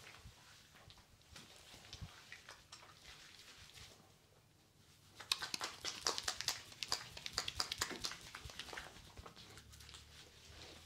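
Hands rubbing and squeezing thick soapy foam lather over a man's face and head, giving a wet crackling squish. It is faint and sparse at first, then a dense run of rapid wet crackles starts about five seconds in and fades near the end.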